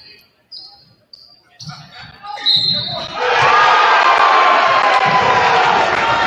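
Basketball game sounds on a hardwood court: sneakers squeaking and a ball bouncing. About two and a half seconds in comes a short, sharp referee's whistle, stopping play. A crowd then breaks into loud cheering and shouting that keeps up.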